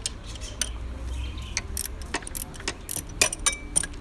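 Hand ratchet clicking in short irregular runs, with metal tool clinks, as an alternator mounting bolt is loosened.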